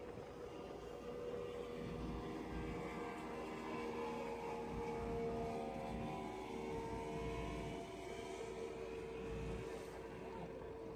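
Wind buffeting the microphone over the steady droning hum of a boat's engine on open water.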